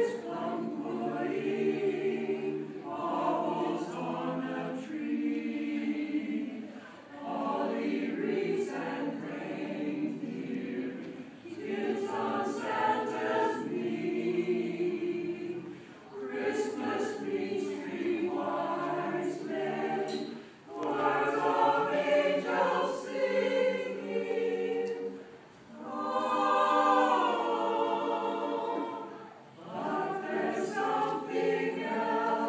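Small mixed choir of men and women singing, in phrases of about four to five seconds with brief breaks between them.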